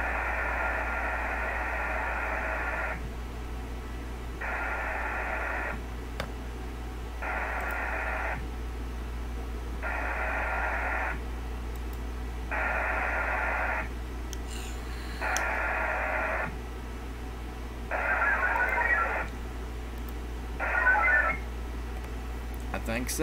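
VARA HF modem sending repeated connect requests over an HF radio: a long burst of data tones, then seven shorter bursts of about a second each, every two and a half to three seconds. The calling station is not yet getting an answer.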